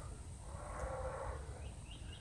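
Faint outdoor ambience with a steady low rumble on the microphone, a faint drawn-out animal call in the middle, and a few short high bird chirps near the end.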